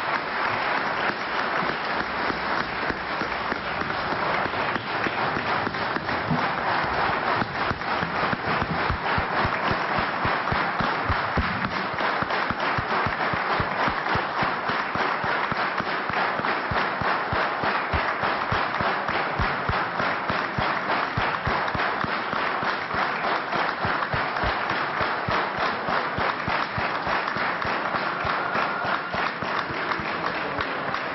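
A large crowd of people clapping in a steady, sustained ovation, many hands at once with no break.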